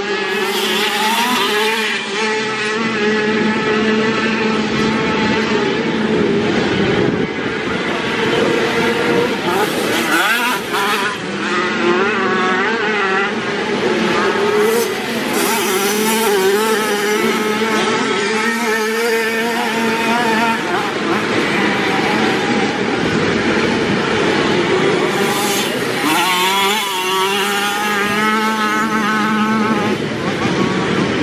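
Classic 50cc two-stroke motocross bikes racing, their engines revving up and down with a wavering, rising-and-falling pitch, often more than one engine at a time.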